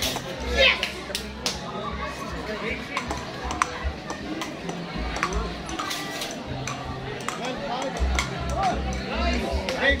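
Scattered sharp clicks of a table tennis ball bouncing on the table and off paddles, over background music and voices.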